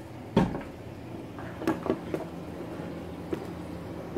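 Several sharp knocks and bumps from handling: the loudest about half a second in, three more in quick succession near the middle, and a light click later, over a faint steady low hum.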